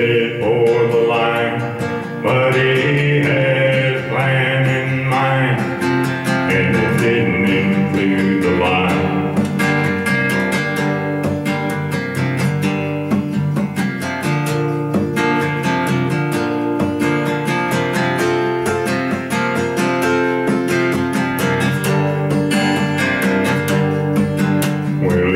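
Acoustic guitar strummed in a country-style song, with a man singing over roughly the first nine seconds and the guitar then carrying on alone in an instrumental break.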